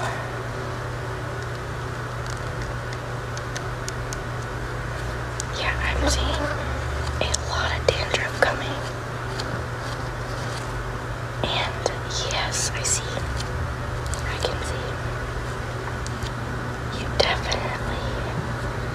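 Soft whispering in a few short phrases, with a couple of light clicks, over a steady low hum.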